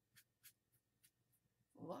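Faint swishes of a paintbrush stroking acrylic paint across crumpled paper-bag paper, about five short strokes in a second and a half.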